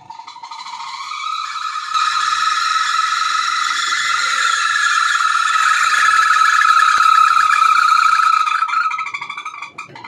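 Singer Maxiclean 8.5 kg semi-automatic washing machine spinning with a loud, steady high-pitched squeal carrying several overtones, rising in pitch and loudness over the first two seconds and fading near the end. The owner traces the noise to the spin motor's buffer bush rubbing dry once its factory grease has worn away.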